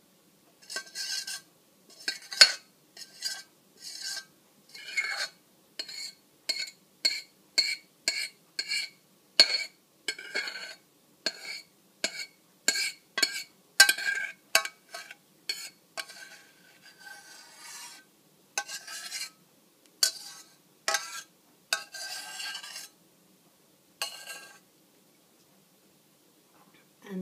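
A utensil scraping the last of a thick coulis out of a metal pot, in quick repeated strokes about two a second, each one making the pot ring briefly. The strokes thin out, become a softer scrape, and stop a little before the end.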